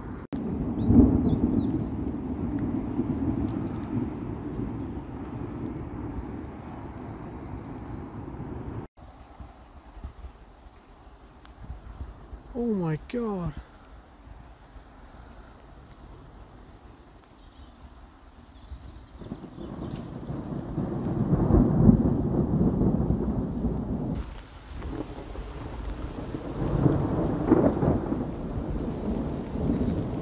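Rolling thunder from an approaching storm: long low rumbles, loud at first, then quieter, swelling again to the loudest rumble about two-thirds of the way through, with another near the end.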